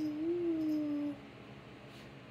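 A cat meowing once: a single drawn-out call of about a second that rises slightly, then holds level and stops.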